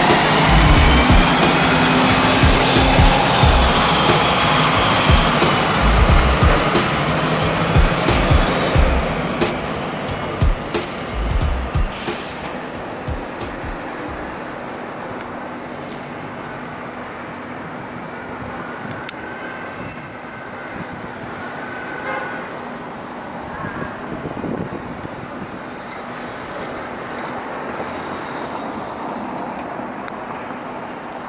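Music with a heavy beat and gliding synth tones for about the first twelve seconds, dropping away, then steady city street traffic noise for the rest.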